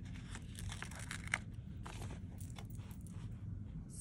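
Faint rustling and crinkling of sticker paper as a sticker is peeled from its backing sheet and handled, with a few small, sharp ticks.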